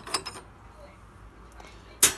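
A few light metallic clicks in the first half-second as a euro cylinder lock is slid free of a UPVC door's lock case.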